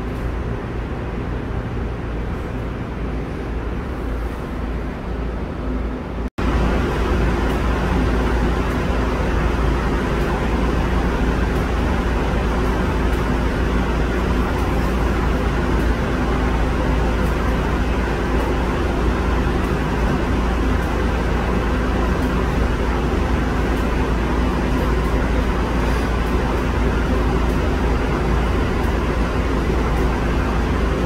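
Steady hum inside a light-rail car, with ventilation and heating noise and several low steady tones. It breaks off briefly about six seconds in and comes back louder and steady.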